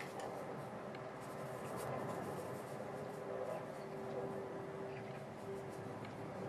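Faint scratching and brushing of a watercolour brush at work, over a steady low hum.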